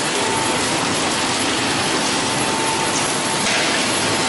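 Automatic PET bottle water production line running: a steady, dense machine noise with hiss, and a constant mid-pitched whine over it.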